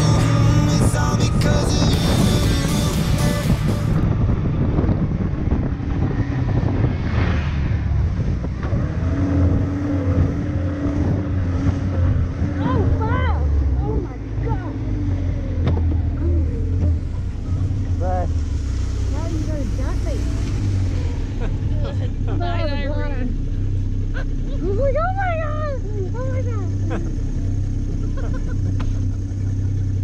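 Background music that ends about four seconds in, then a snowmobile engine running steadily as the sled rides along the trail, heard from the rider's seat.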